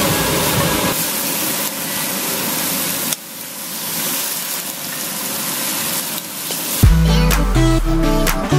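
Marinated chicken pieces sizzling in a hot non-stick frying pan as they are laid in with tongs. About seven seconds in, music with a deep bass note and guitar comes in.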